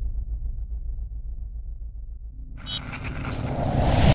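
Sound design for a news-channel logo animation: a low pulsing rumble, then, about two and a half seconds in, a rising swell that grows loudest at the end.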